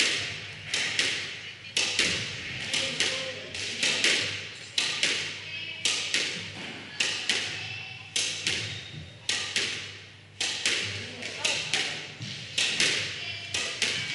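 Squash ball struck again and again by a racket and rebounding off the front wall: sharp hits about two a second, alternating racket strike and wall strike, each with a short echo in the enclosed court.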